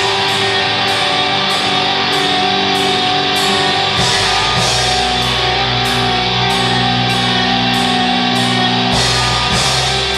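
Live rock band playing loud and steady: electric guitars, bass guitar and drums, with a regular beat of cymbal hits and a bass line that shifts to new notes about halfway through and again near the end.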